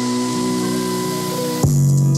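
Instrumental music played through a DBSOARS Motor Boom Bluetooth speaker: held synth chords over a hiss, then a bass note and a drum hit come in about one and a half seconds in.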